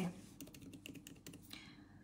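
Faint, rapid run of keystroke clicks on a laptop keyboard as a number is typed in.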